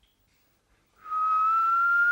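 A single long whistle starting about a second in and rising slowly in pitch: a mouth-whistled imitation of a firework rocket going up.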